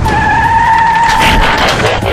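A car's tyres squealing in a skid: one held squeal that stops about a second and a half in, over a low engine rumble.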